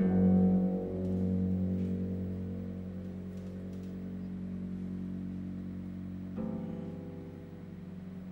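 Concert pedal harp: a deep bass chord is plucked and left to ring, fading slowly, and a softer chord is plucked about six seconds in.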